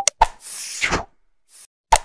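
Animated like-and-subscribe end-screen sound effects: sharp clicks and pops, with a short whoosh about half a second in and another click near the end.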